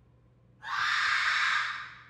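A person's harsh, hoarse scream from off-screen, starting about half a second in, held for about a second and then fading away.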